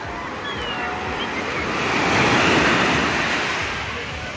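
Small sea waves breaking and washing over the shallows, swelling to a louder wash about two seconds in. Faint distant voices of bathers can be heard near the start.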